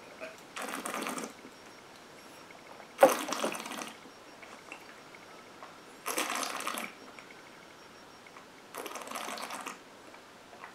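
Mouth and breath sounds of a taster working a sip of gin: four breathy rushes of air through pursed lips, each under a second and about three seconds apart.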